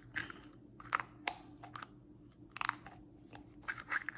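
Plastic Easter egg halves pressed and squeezed together over wrapped Starburst candies, giving scattered sharp plastic clicks and creaks, some in quick clusters; the egg will not snap shut.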